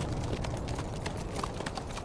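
Hooves of several horses walking on cobblestones: an irregular run of overlapping clops.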